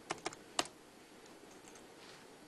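A few quick keystrokes on a computer keyboard, bunched in the first second, then only a faint steady background hum.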